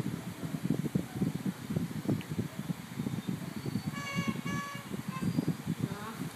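A child's violin bowed in a few short notes about two-thirds of the way in: two of the same pitch, then a brief third, over low rumbling background noise.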